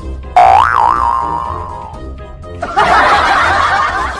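Background music with a loud cartoon "boing" sound effect about half a second in, its pitch wobbling up and down and then sliding down. Near three seconds in, a loud burst of laughter cuts in and keeps going.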